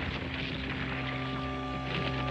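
The tail of a cartoon dynamite blast: a low rumble and scattering debris noise slowly fading, under background music whose held chords come in about a second in.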